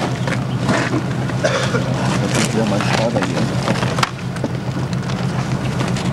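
A vehicle engine idling steadily nearby, a low even hum, with low voices over it.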